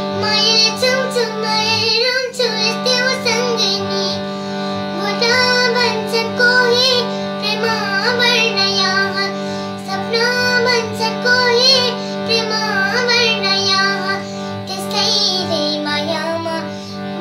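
A young girl singing a melody to her own harmonium accompaniment; the harmonium holds a steady chord under her voice throughout.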